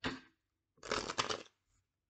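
A deck of tarot cards being shuffled by hand. A short rustle at the start is followed, about a second in, by a denser burst of card-on-card flicking lasting about half a second.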